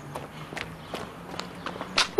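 Footsteps of several people walking on a hard paved surface: faint, irregular steps over a low steady hum.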